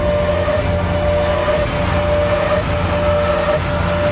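Trailer soundtrack: a single high note held steadily over a heavy, continuous low rumble.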